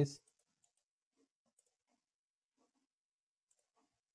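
Near silence: room tone with a few very faint, isolated clicks, after a spoken word trails off at the very start.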